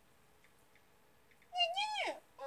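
Near silence, then about one and a half seconds in a short, high-pitched call that rises and then falls like a meow.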